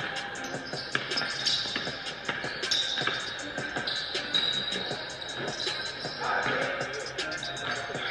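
Background music with a steady beat, with a basketball bouncing on a hardwood gym floor now and then.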